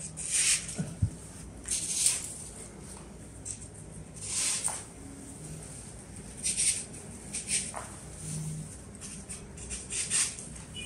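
Artificial leaf sprays rustling and their stems scratching into floral foam as they are handled and pushed in, in several short bursts a second or two apart.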